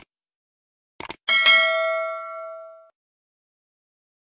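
Subscribe-button sound effect: mouse clicks, a quick double click about a second in, then a bright bell ding that rings out and fades over about a second and a half.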